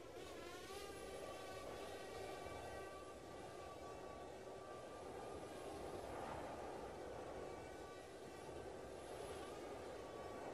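A faint, steady mechanical hum with a few held tones, whose pitch dips and rises again about half a second in, over a low rushing noise.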